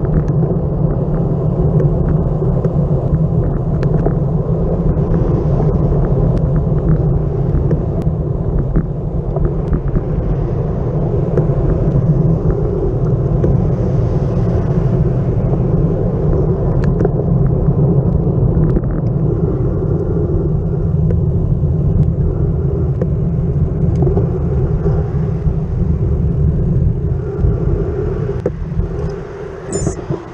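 Steady wind rush and buffeting on a bicycle-mounted camera's microphone, mixed with road bike tyre noise on asphalt while riding at speed, with scattered small clicks from road bumps. The noise drops off near the end as the bike slows down.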